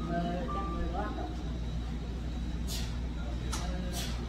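Café room sound: background music and voices over a steady low rumble, with three short hisses in the last second and a half.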